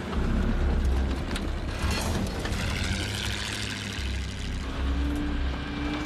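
Engine of a vintage Bombardier tracked snowmobile running under load as it drives over a ridge of piled-up ice. The low rumble is loudest at the start and again toward the end.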